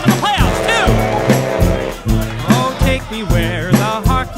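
A New Orleans-style brass band playing an instrumental passage with horns and drums over a bass line that pulses about twice a second. Some of the horn lines bend and slide in pitch.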